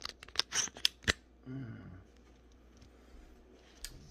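Handling noise as a phone is worked out of a tripod/selfie-stick phone clamp: a quick run of sharp clicks and scrapes in the first second or so, then one more click near the end.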